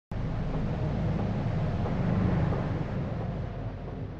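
Opening title sound effect: a deep, rumbling whoosh that starts abruptly and slowly fades.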